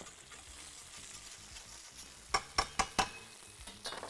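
Curry-marinated chicken sizzling in a hot grill pan, a steady faint hiss. A few sharp clicks of metal tongs against the pan come a little past the middle.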